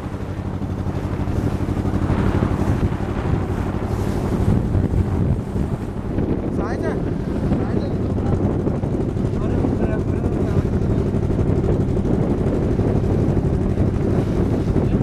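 A boat's engine running steadily under way, with wind buffeting the microphone.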